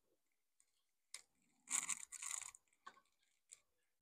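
Soldering iron tip working a solder joint on a circuit board: a faint crackly noise lasting under a second about halfway through, with a few light clicks before and after.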